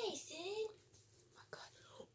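A person talking in a breathy, half-whispered voice for under a second, trailing off into a quiet room.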